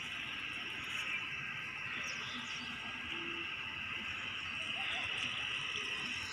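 Steady, faint outdoor background hiss with no distinct event standing out.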